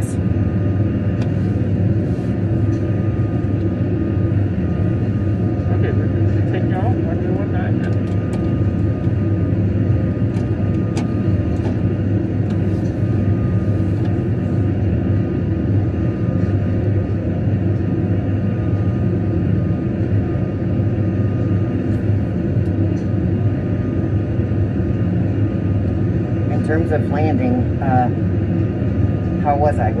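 Jet airliner flight simulator's engine and airflow sound: a steady low rumble with a thin steady whine above it. Scattered faint clicks and creaks sound through it.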